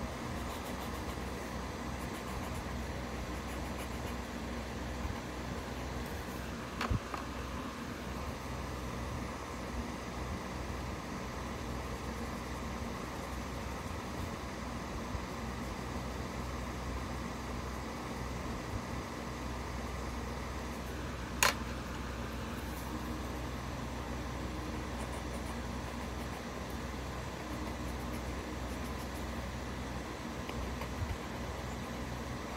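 Steady low room hum and hiss, like a fan or air conditioner. A sharp click about two-thirds of the way through, and a softer one earlier.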